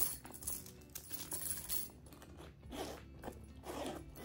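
A chunky metal chain strap on a leather shoulder bag clinks as the bag is handled, giving a sharp click at the start and several lighter clicks over soft handling noise.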